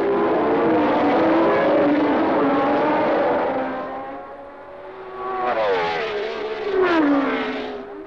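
A field of Formula One racing cars at full throttle accelerating away from the start, several engine notes sounding at once. The sound eases about four seconds in, then a car passes closer, its engine pitch dropping toward the end.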